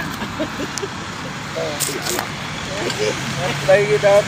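People talking over outdoor background noise, with a steady low hum near the end.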